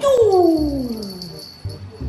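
A puppy gives one long whine that falls steadily in pitch over about a second and a half.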